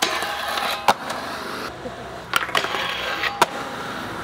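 Skateboard truck grinding along a steel flat bar in a feeble grind, a scraping hiss with a faint squeal, heard twice. Sharp clacks mark the board locking onto the bar and landing off it.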